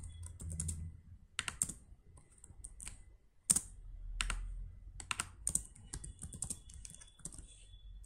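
Computer keyboard typing: irregular, separate keystrokes, with one sharper click about three and a half seconds in.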